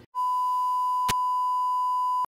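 Steady high-pitched television test tone, the reference tone played with colour bars to mark the station going off the air, with a brief click about a second in.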